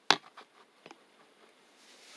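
Handling knocks and clicks as a small video light is set on top of a phone tripod: one sharp knock just after the start, then two fainter clicks within the first second.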